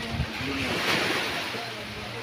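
Sea waves washing on the shore, swelling about halfway through, with some wind on the microphone.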